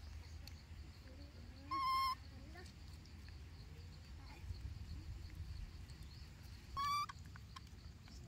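Two short, high, steady-pitched animal calls about five seconds apart, each lasting about half a second. Between them, faint small chirps sound over a low background rumble.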